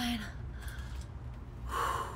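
A woman breathing hard from exertion in the middle of a set of resistance-band leg exercises, with one forceful, breathy exhale near the end. A steady low hum runs underneath.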